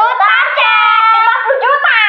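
High-pitched child's voice in a sing-song, exaggerated exclamation, the pitch sliding up and down with no clear words.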